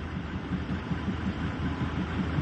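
Wind buffeting the microphone outdoors: a steady low rumble with no distinct events.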